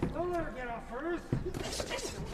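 Voices shouting from ringside, with a sharp thud about 1.3 s in, typical of a boxing glove landing a punch.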